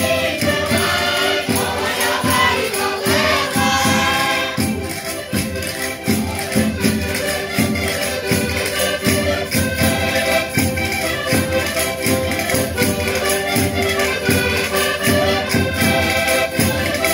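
Several Portuguese concertinas (diatonic button accordions) playing a lively traditional Minho folk tune together, steady held reed chords over a regular bass beat.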